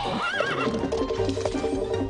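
A horse whinnies once near the start, a wavering call that falls away. Background music with held notes plays under it.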